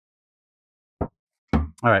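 A single short knock about a second in: a flathead screwdriver knocking against the brake caliper and pads as the pads are pried back to push the caliper pistons in.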